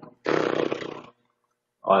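A man's voice making one drawn-out, wordless vocal sound, lasting about a second.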